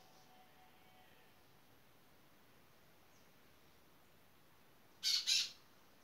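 Two short, harsh squawks in quick succession about five seconds in, typical of a bird, over a faint steady background hiss.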